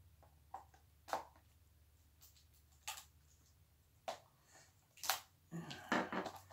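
Plastic shrink wrap on a Blu-ray case being slit and picked open with a small blade: a handful of sharp crackles and clicks, roughly a second apart, over a faint low hum.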